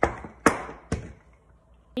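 Wooden rolling pin knocking on a granite countertop while rolling out flour tortilla dough: three sharp knocks about half a second apart, the middle one loudest.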